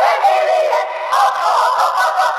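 An electronic, synthetic-sounding singing voice holding wavering notes without pause. It sounds thin and tinny, with no bass at all.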